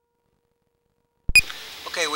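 Dead silence, then about a second and a quarter in the audio cuts in abruptly with a sharp click and a brief high blip, leaving a steady low hiss.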